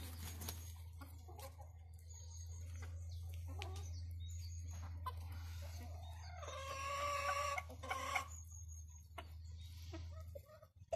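Chickens clucking and pecking, with one longer pitched call about six and a half seconds in and a short call just after it.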